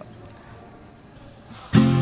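A short hush of room tone, then near the end an acoustic guitar comes in with a loud strummed chord that rings on: the start of the song.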